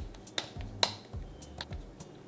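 Hands patting and pressing a ball of masa dough flat between the palms to shape a round gordita: a series of short pats, about five, the sharpest a little before the middle.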